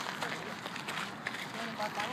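Open-air background noise, a steady hiss, with faint distant voices coming in about one and a half seconds in.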